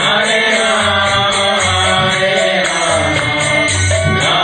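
Devotional mantra chanting with a violin playing along.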